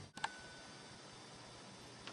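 A single sharp click about a quarter of a second in, followed by faint room tone.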